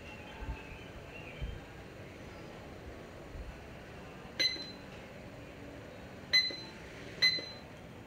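Three sharp clinks, each with a brief high ringing note, the first about four seconds in and the last two close together near the end, over a steady low hiss; two soft dull thumps come in the first second and a half.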